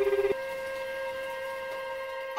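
A telephone ringing with a fast warble, one short burst that cuts off about a third of a second in, followed by a single held woodwind note of background music.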